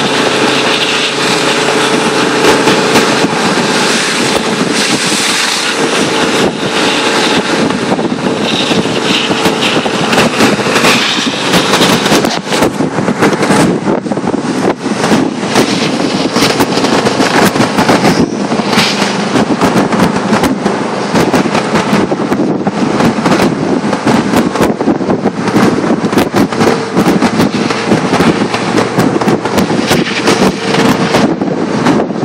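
Wind and road noise from an Audi 80 Avant Quattro driving slowly on a packed-snow road, heard from beside the car, with a steady engine hum underneath. Frequent crackling on the microphone from about twelve seconds in.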